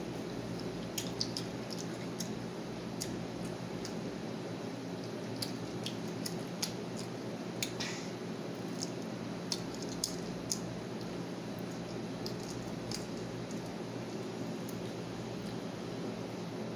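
A child chewing garlic butter shrimp up close: soft, wet mouth clicks and smacks at irregular intervals, stopping a few seconds before the end, over a steady low background hum.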